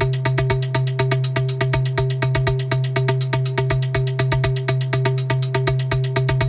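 Electronic dance loop recorded from an Elektron Digitone synthesizer, playing back: a kick drum on every beat at about two a second, fast even sixteenth-note ticks over a sustained low bass tone and a few held higher notes, all locked tightly to the tempo.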